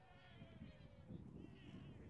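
A faint, distant human voice in a long drawn-out call that slides slowly down in pitch and fades about a second in, with a shorter call near the end, over a low rumble of wind on the microphone.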